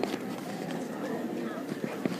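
Many voices chattering at once in a large hall, a steady hubbub of children and adults with no single speaker standing out, and a few faint knocks among it.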